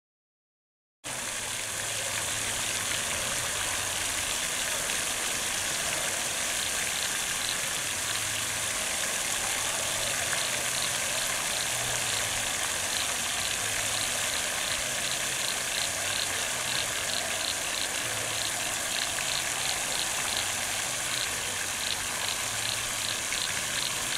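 Water fountain on a dam: a steady rush of spray falling back onto the water, starting about a second in.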